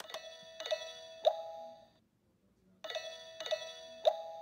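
Electronic ringtone of a toy Teletubbies phone: a three-note chime, played twice with a short pause between, as a call rings.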